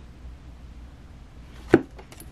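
Low, steady room hum, then one short, sharp tap about three-quarters of the way through as a tarot card is picked up off the table.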